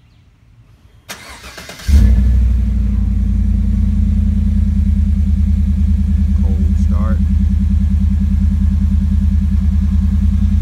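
A 2015 Chevrolet Silverado 1500 started from cold through a Flowmaster Super 44 exhaust with its resonator still in place. The starter cranks for under a second, then the engine catches with a loud flare about two seconds in. It settles into a steady, deep idle heard close to the tailpipe.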